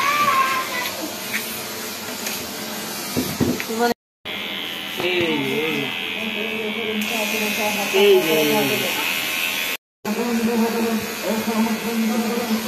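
Cordless electric hair clipper buzzing steadily as it cuts a baby's hair, with a voice rising and falling over it twice. The sound cuts out completely for a moment twice.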